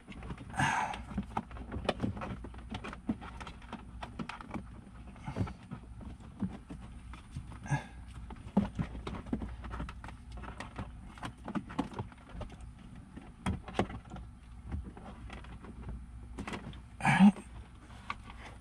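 Hands and speaker wire rustling, scraping and knocking against plastic dashboard trim as the wire is fished up behind the dash: a run of irregular small clicks and scrapes.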